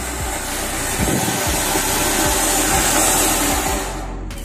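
Ground fountain firework (flower pot) spraying sparks with a steady hiss that grows louder about a second in and cuts off suddenly at the end.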